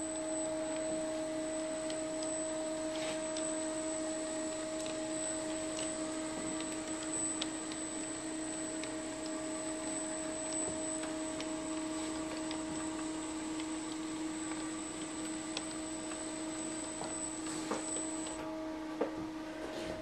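Two Aristo-Craft E9 large-scale model diesel locomotives running on track: a steady motor and gear hum with a few faint clicks of the wheels over rail joints and turnouts.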